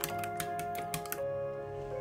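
Egg beating: a wooden chopstick clicks rapidly against a ceramic bowl as four eggs are whisked, then stops just over a second in. Soft background music with held notes plays throughout.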